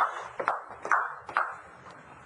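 Footsteps: about four sharp heel taps on a hard floor, roughly half a second apart, each ringing briefly.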